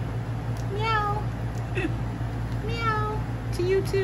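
A kitten meowing: three short meows, about a second in, near three seconds and at the end, with a brief chirp between the first two.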